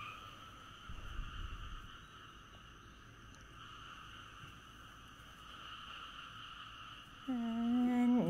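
A pause in Thai Buddhist chanting in Pali: a faint steady hiss and a brief low rumble about a second in. Then, about seven seconds in, the chant starts again on a held, even pitch.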